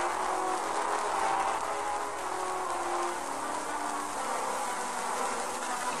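A steady, even, insect-like buzzing ambience with faint short held notes drifting through it.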